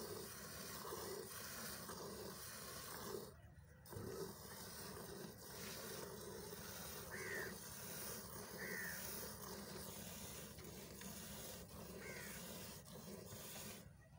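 Water buffalo being milked by hand: faint milk squirts hissing into a steel bucket, with a short break about three and a half seconds in. A few brief high chirps sound near the middle and towards the end.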